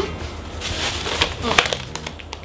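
Muffled mouth sounds from people with their mouths crammed full of marshmallows: breathy, airy noise with a scatter of wet clicks and a brief muffled hum.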